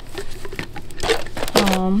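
Rustling and crinkling of plastic packaging being handled, in short irregular scrapes, followed near the end by a woman's drawn-out 'um'.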